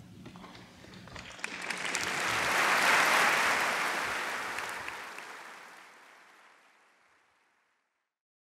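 Audience applauding: the clapping builds over the first few seconds, peaks about three seconds in, then fades away to nothing.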